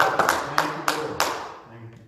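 Rhythmic hand clapping, about three to four claps a second, over indistinct voices. The clapping stops about a second in and the sound fades away.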